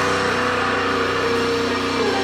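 Live funeral doom metal band, electric guitars holding a loud, sustained droning chord, with no drum strikes.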